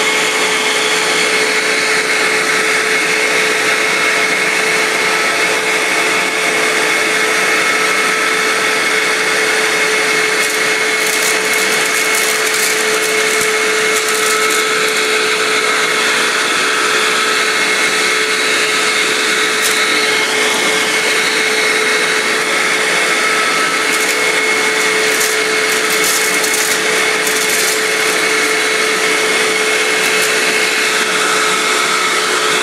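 Upright vacuum cleaner running steadily on carpet, a constant motor whine. Bits of popcorn rattle up into it in short bursts of clicks, about a third of the way in and again near the end.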